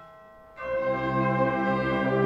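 Symphonic wind band playing slow, held chords, with brass prominent: a phrase dies away into a brief quiet pause, and about half a second in the band comes back in with a new sustained chord.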